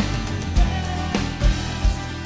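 Live worship band playing an upbeat song: strummed acoustic guitar, electric guitar and a drum kit keeping a steady beat, with a drum hit about every half second.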